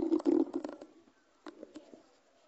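Chalk writing on a blackboard: a run of scratchy strokes in the first second, then a few light taps about a second and a half in.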